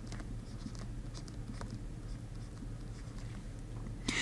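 Faint taps and scratches of a stylus writing on a drawing tablet, over a steady low hum.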